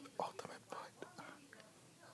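A man whispering: a few short, soft, breathy bursts in the first second, then only faint murmuring.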